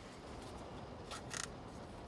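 Lid of a small plastic portion cup being pried open: two short, faint crackly clicks a little after a second in, over a low steady background.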